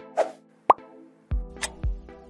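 Quiz-show sound effects: a short whoosh, then a quick rising pop-like blip. About a second and a quarter in, background music starts with a steady kick-drum beat of about two thumps a second.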